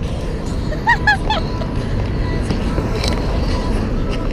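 Road traffic on a busy city street: a steady low rumble of passing cars. About a second in come three quick, high chirps.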